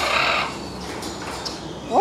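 A macaw gives a short, harsh squawk at the start, followed by quieter background noise.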